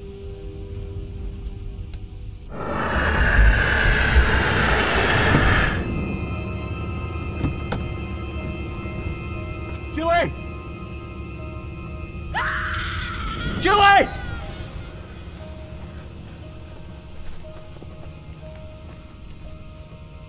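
Horror film score: an eerie sustained drone, broken by a loud noisy surge about two and a half seconds in that lasts some three seconds. Short voice-like cries come near the middle and again a few seconds later, and a faint pulsing tone runs through the last few seconds.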